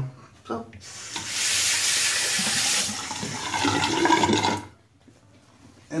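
Water from a bathroom sink tap runs for about two seconds, then splashes more unevenly for another two seconds, then stops.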